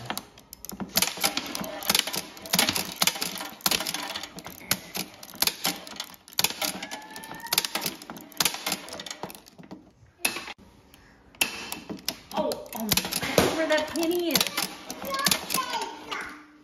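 Rapid, irregular mechanical clicking and clattering from a vintage arcade gun game. A child's voice cries out near the end.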